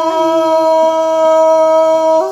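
A singer holding one long, steady vowel note in Tai (Thái) folk call-and-response singing from northwest Vietnam.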